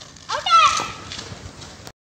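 A short, high-pitched wordless shout with a bending pitch, about half a second in; the sound then cuts off abruptly just before the end.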